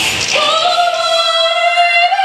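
A woman singing one long held note into a microphone. The backing music drops away just before the note begins, leaving the voice nearly alone.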